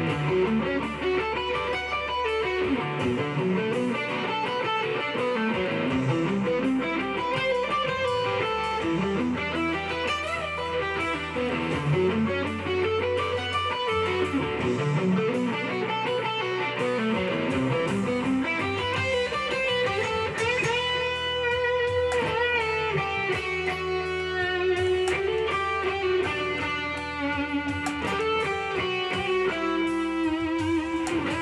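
Electric guitar, a Fender Stratocaster, playing a heavy open-position riff and lead lines from the E minor pentatonic, with low notes held underneath. In the second half the lines have string bends and vibrato.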